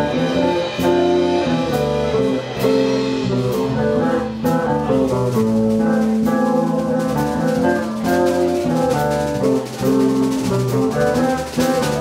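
Live rock band playing: electric guitar lines over bass guitar and a drum kit with cymbals. One long held note runs through the middle.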